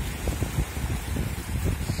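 Wind buffeting the microphone in an uneven low rumble, over small sea waves breaking gently at the shoreline.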